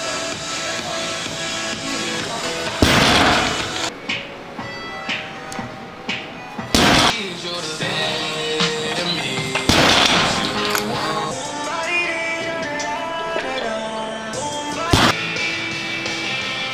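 Background music with sustained notes, broken by four sharp, loud impacts about three to five seconds apart.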